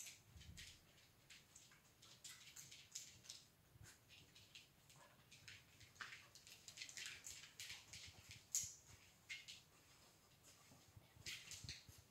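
Faint, irregular ticks and short puffs from a small terrier searching by scent: its claws clicking on a hard floor as it moves about, and sniffing.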